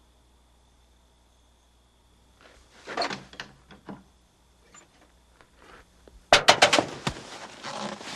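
Knocking and rattling on a vehicle's locked door and window: a few soft knocks and rustles, then about six seconds in a sudden loud run of rapid bangs and rattles.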